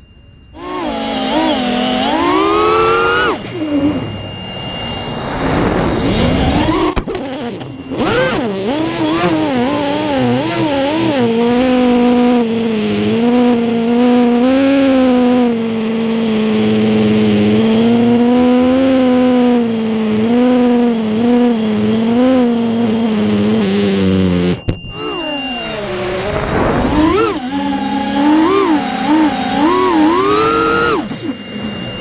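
A racing quadcopter's brushless motors and three-blade propellers whine as the pilot works the throttle, the pitch swinging up and down. The sound drops out briefly a few times, sharply near the end, as the throttle is cut, and is recorded on board.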